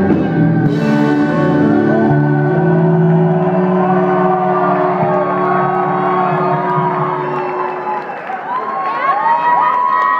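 A live rock band holds its final chord, which stops about seven seconds in, while a concert crowd cheers, whoops and whistles, the cheering strongest near the end.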